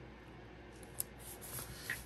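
Faint handling of a paper sticker with metal tweezers: the sticker is lifted off its backing sheet and laid onto the planner page, with one small sharp click about a second in.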